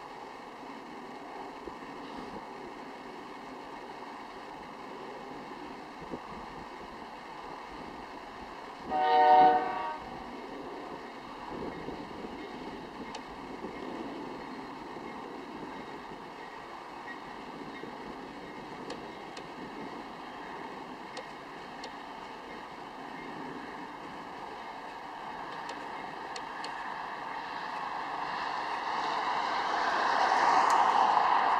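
Distant CN diesel-hauled freight train rolling by with a steady rumble. About nine seconds in, the locomotive sounds one short horn blast. Near the end the rumble grows louder.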